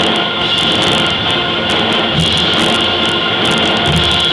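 High school concert band playing a loud, dense full-ensemble passage, with percussion strokes running through it.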